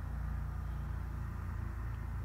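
Steady low hum with no other events.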